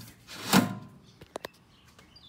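Metal honeycomb bed panel slid down into the bottom slot of an xTool M1 laser engraver: a short sliding sound ending in a knock about half a second in, then a few light clicks as it settles.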